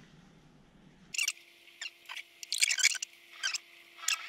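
Small, sharp clicks and ticks of a spinning fishing reel being handled, coming in several quick clusters from about a second in.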